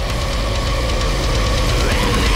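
Heavy metal recording between riffs: a held, sustained note over a deep, heavy low-end drone, steadily growing louder.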